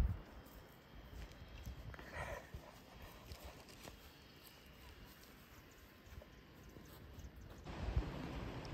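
Faint, uneven wind rumble on the microphone on an exposed clifftop, growing stronger near the end. About two seconds in there is a brief, faint pitched call.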